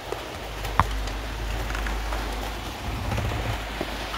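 A car's wiring harness and plastic connectors being handled under the dashboard: a sharp click about a second in and a few faint clicks near the end, over a steady hiss and low rumble.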